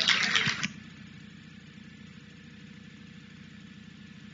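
Clapping that stops under a second in, followed by a steady low hum of room tone.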